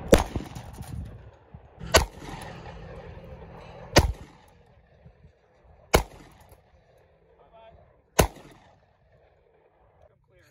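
Five handgun shots fired one at a time, about two seconds apart, each trailing off in a short echo.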